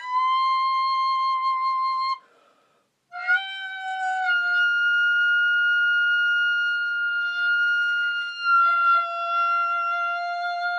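Solo recorder playing long, steady held notes in a slow contemporary piece. About two seconds in, the note stops for about a second of near silence. A higher note is then held for most of the rest, with a lower note sounding beneath it now and then.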